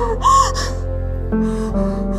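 A woman crying, with sharp gasping sobs, over slow sustained background music that shifts chord partway through.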